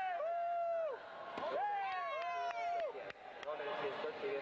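A high-pitched voice shouting a two-syllable call twice, over the steady hubbub of an arena crowd.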